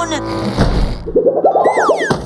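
Cartoon sound effects over background music: a low thump about half a second in, then a quick wobbling boing with a falling whistle near the end.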